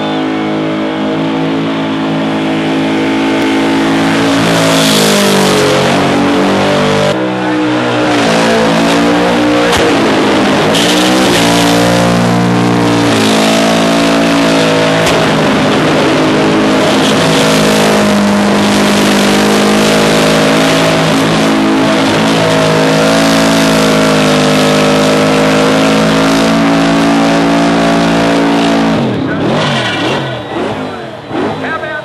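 Car burnout: the engine is held at high revs while the rear tyres spin and squeal against the track. The revs dip and pick up again a couple of times early on, hold steady, then come off just before the end.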